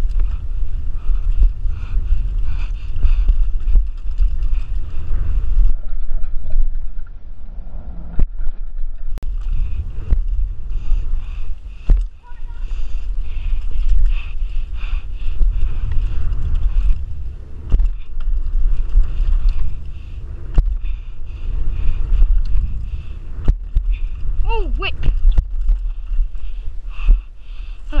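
Mountain bike ridden fast over a dirt trail, heard from a rider-worn action camera: heavy wind rumble on the microphone over tyres rolling on dirt and the bike rattling, with sharp knocks from bumps and landings every few seconds.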